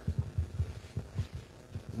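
Handling noise from a wired handheld microphone being passed over and gripped: a run of dull, irregular low thumps through the PA.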